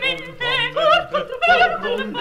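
Music: a singing voice in an operatic style with wide vibrato, moving between held notes over a steady low sustained note.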